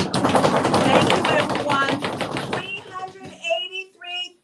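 A fast drum roll of densely packed strikes that stops about two and a half seconds in. Excited voices then shout and whoop.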